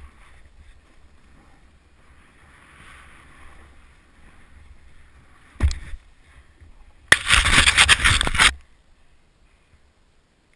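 Snowboard sliding through snow, with a low wind rumble on the microphone. A thump comes about five and a half seconds in, then a loud scraping rush of snow lasting about a second and a half.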